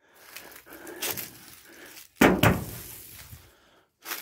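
Loose wooden barn boards knocking and clattering underfoot and against each other: faint rustles and small knocks, then a sudden loud wooden bang about two seconds in, followed by a second knock that dies away.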